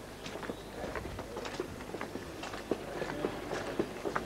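Footsteps on a paved street: a run of light, irregular taps over faint outdoor background noise.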